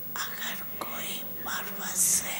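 Soft whispered speech: breathy, unvoiced syllables with no voiced tone, much quieter than the talk around it.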